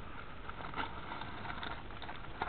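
Scissors cutting through a plastic postal mailer bag: a few faint snips and crinkles of the plastic over a low steady background hiss.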